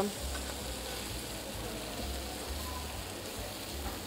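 Marinated chicken pieces pan-searing in a non-stick frying pan, a steady sizzle of frying.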